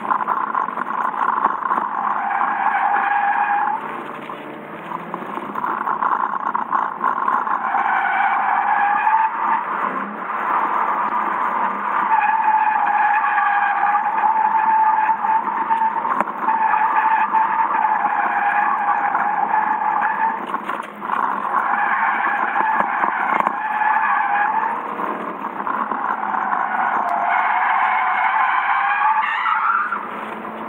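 Tyres of a Lexus sedan squealing as the car slides at the limit of grip through corners, heard from inside the cabin. There are about six long squeals of a few seconds each with short breaks between them, their pitch sagging and rising as each slide builds and eases.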